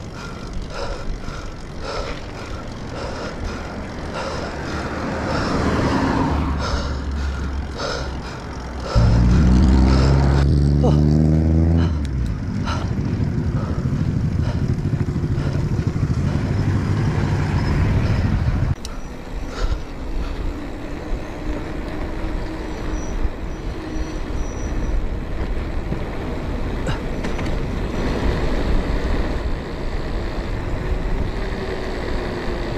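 Wind rushing over a cyclist's action camera during a road ride. About nine seconds in, a motor vehicle's engine comes in loud for about three seconds, rising slightly in pitch, and noisy traffic follows until a little past halfway.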